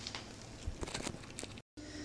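A few faint, soft knocks and handling rustles, with a brief dead gap near the end where the recording is cut.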